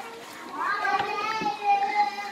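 A young child's high voice calling out one long, sung-out note, rising at first and then held for about a second.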